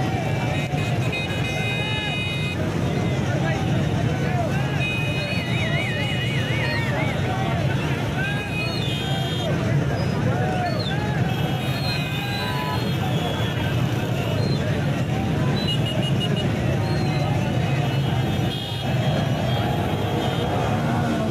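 Dense noise of a slow vehicle procession: many voices shouting over running car and motorcycle engines, with horns sounding now and then and a warbling tone about five seconds in.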